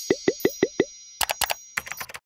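Five quick cartoon pop sound effects in a row, each dropping in pitch, over a lingering high chime tone, then two clusters of short clicks.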